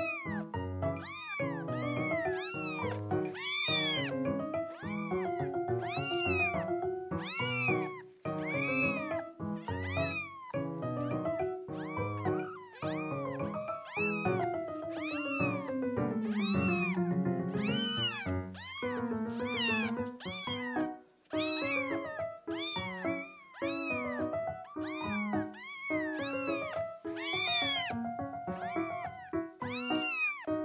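Kitten meows repeated over and over, about one or two short high calls a second, over light background music.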